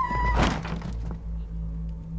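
A single thunk about half a second in, over steady background music.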